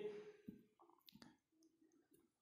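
Near silence: room tone, with two faint clicks about half a second and just over a second in.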